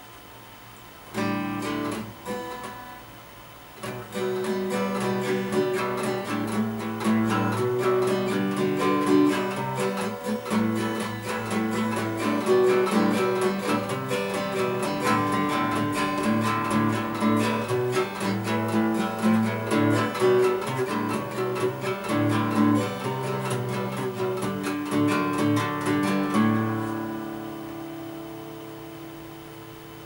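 Acoustic guitar strummed in chords by a self-taught beginner in practice. A first chord sounds about a second in, there is a short gap near four seconds, then steady strumming that stops near the end and lets the last chord ring out.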